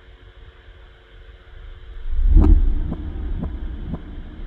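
Sound-design layers made from a struck five-gallon water jug, pitched down with added sub bass. A reversed swell rises into a deep, heavy boom about halfway through, followed by a rhythmic pattern of sharp taps about half a second apart.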